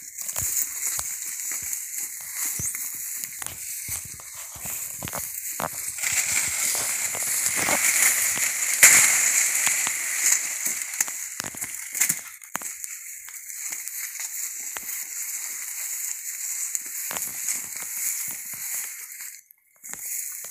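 Rustling and crackling of dry banana leaves and grass as someone moves through a banana plantation, with many short clicks. In the middle it grows louder, with a sharp hit a little before halfway as a machete cuts into a banana plant to take off a bunch.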